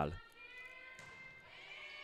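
Quiet gymnasium room tone during a pause in play, with a faint steady hum. A commentator's voice trails off at the very start.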